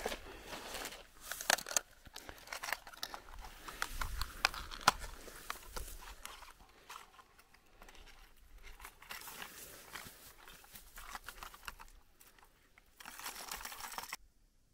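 Plastic lure packaging crinkling and rustling as lures are handled and a blister pack is opened over a plastic tackle box, with scattered sharp clicks and taps of plastic.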